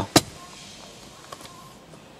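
A single sharp click just after the start, then a faint steady hiss of the car's interior, with one tiny tick midway.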